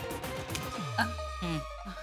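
Dramatic background-score sting: a tone glides down into a long held low bass note, with a few short falling notes over it, the kind of comic sound effect laid under a smirk.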